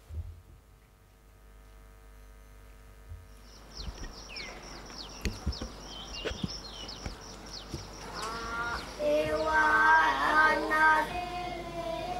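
Soundtrack of a tourism film played over a lecture hall's loudspeakers: birds chirping from about three seconds in, then a high voice singing held notes near the end.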